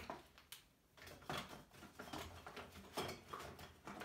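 A few faint knocks and clicks with rustling: small objects, a hair clipper and its charging cable, being picked up and handled.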